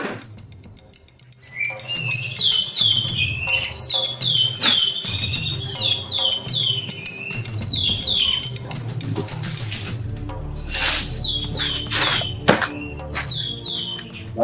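Birds chirping: from about a second and a half in, repeated short whistled notes, each dropping in pitch, a few to a second, over background music with a low drone.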